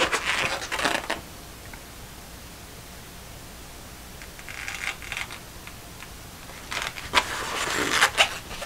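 Paper towel rubbing and wiping around a paint cup in three short bursts of rustling and scraping, each about a second long: at the start, in the middle and near the end.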